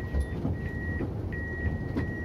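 Siemens ULF tram's door warning signal: a high single-tone beep repeating three times, about every two-thirds of a second, over the low rumble of the standing tram.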